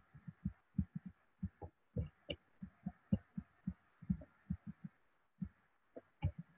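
Faint, irregular low taps of a stylus on a tablet screen as an equation is handwritten, about four a second, stopping near the end.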